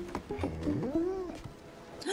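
A cartoon bulldog barking and whining on a film soundtrack. A few short sounds come first, then one whine that rises and falls about halfway through.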